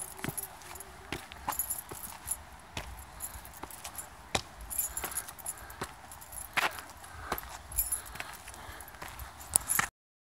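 Footsteps climbing stone steps: irregular scuffs and clicks over a low rumble of handling noise, cutting off suddenly just before the end.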